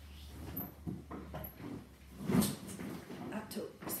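Pouches and small items rustling and knocking as they are handled and set down on a table, with a louder bump about two and a half seconds in and a sharp click near the end.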